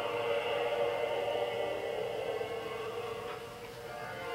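Two Scottish terriers howling along in long, sustained, wavering notes that slowly fade toward the end.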